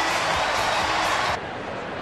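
Ballpark crowd noise with music over the stadium PA, just after a run-scoring double. About a second and a half in it drops suddenly to a quieter crowd murmur.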